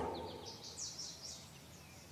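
Faint bird chirps: a quick run of short, high, falling notes that thins out and fades within the first second and a half.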